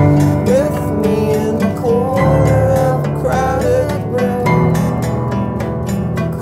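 Live indie song: a sung melody over sustained instrumental chords, with the chords changing about two seconds in and again about four and a half seconds in.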